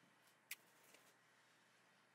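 Near silence: room tone, with one brief faint click about half a second in and a softer one just before the one-second mark.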